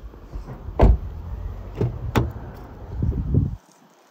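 Car door being handled: a heavy thump about a second in, then two sharp knocks, with low rumbling handling noise that cuts off abruptly near the end.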